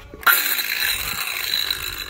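Rasping, scraping handling noise from a phone being gripped and turned close to its microphone. It starts suddenly a quarter second in and goes on steadily, with a thin whine running through it.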